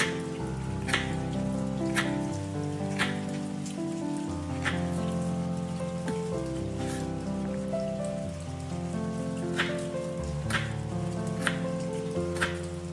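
Kitchen knife chopping garlic on a wooden cutting board: sharp, separate strikes about once a second, heard over background music with slow, held notes.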